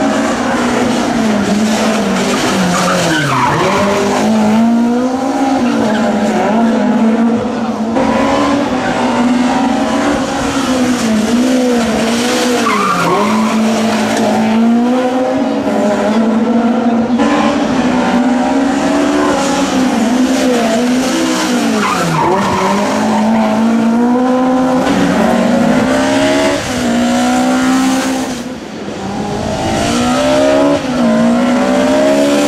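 Rally car engine driven hard. Its pitch climbs through the revs and drops sharply several times as the car brakes and shifts down for corners.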